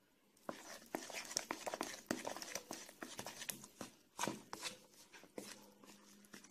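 Hand mixing wet flour, yeast water and yogurt in a bowl at the start of kneading bread dough: a quiet, irregular run of small wet clicks and scrapes, starting about half a second in.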